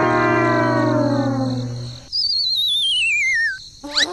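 Cartoon sound effects: a buzzy tone sliding down in pitch for about two seconds, then a wavering whistle gliding steadily downward for about a second and a half.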